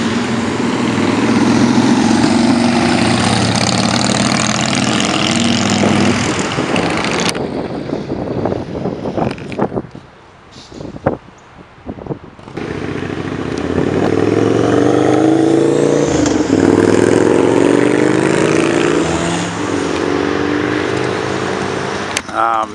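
Loud motorcycle engines in city traffic, revving and accelerating, their pitch rising and falling through gear changes. A quieter stretch of street noise with a few sharp knocks falls in the middle.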